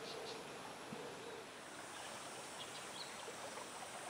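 Faint, steady outdoor creek ambience: a low hiss of flowing water, with a few faint high chirps.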